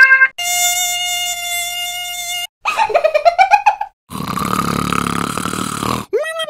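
Three edited-in sound effects in a row, each cut off abruptly: a steady held electronic tone, then a short wobbling warble, then a buzzing rasp.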